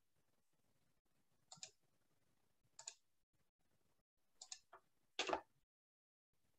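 A few faint, sharp clicks at a computer, about five in all and spread over several seconds, the loudest about five seconds in, against near silence.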